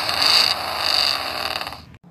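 Recorded engine-revving sound effect played through the small built-in speaker of a Hot Wheels Super 6-Lane Raceway electronic starting gate. It is loud and cuts off abruptly just before the end.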